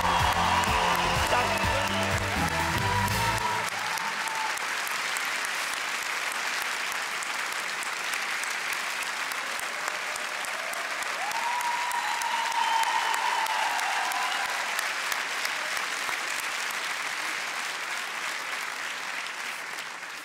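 A large audience applauding steadily. Music with a heavy bass line plays over the first three or four seconds, then stops, leaving only the applause.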